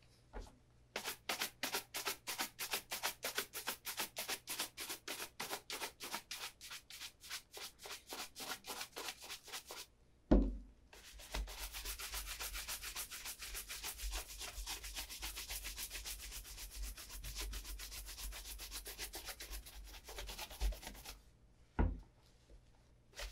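A bristle shoe brush stroked briskly over the leather of an Allen Edmonds Margate shoe, about four strokes a second. A thump about ten seconds in, then a faster, continuous run of short strokes, and a second thump near the end as the shoe is set back down on the wooden table.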